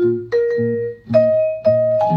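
Jazz guitar and vibraphone duo playing. A few struck vibraphone notes ring on over repeated low guitar notes.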